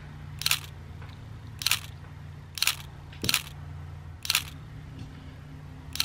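Camera shutter clicks, about five, snapped at uneven intervals roughly a second apart, over a low steady hum.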